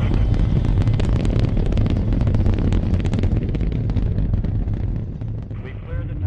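Rocket engines just after liftoff: a loud, deep rumbling roar full of crackle, fading away over the last second or so.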